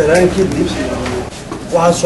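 A man's voice speaking, in two stretches with a short pause between.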